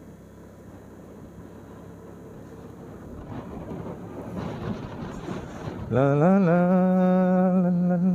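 Wind and running noise of a moving two-wheeler, slowly growing louder. About six seconds in a man's voice hums one long held note, scooping up at the start and then steady; this is the loudest sound.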